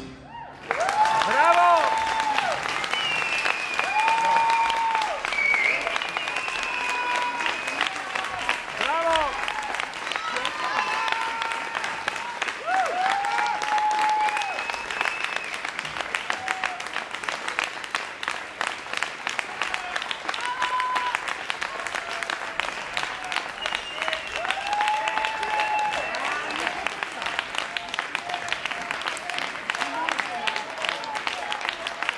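Audience applauding, starting under a second in after a drum ensemble's final stroke and running on steadily, with cheering shouts rising above the clapping now and then.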